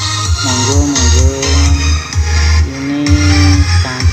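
Loud electronic dance music with heavy pulsing bass and a sliding melody line, played through a stack of miniature speaker cabinets.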